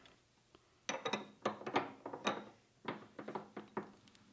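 Light metallic clicks and clinks as a multi-tooth spanner wrench is handled and fitted onto the collet nut of an ER collet chuck held in a bench tightening fixture. The clicks come in several short groups over a few seconds.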